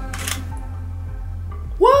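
A brief mechanical sound, about a third of a second long and just after the start, from a Sony A9 camera fitted with a Fotodiox Pronto autofocus adapter as it drives a manual-focus Helios lens. It plays over steady background music.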